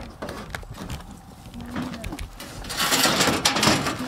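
Clicks and metal clatter, then a loud scraping rattle near the end, from a folding aluminium loading ramp being handled on a pickup's tailgate. A brief voice-like sound comes in the middle.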